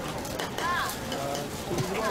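Busy food-stall ambience: background crowd chatter with light clicks and scrapes of metal tongs in large woks of fried noodles.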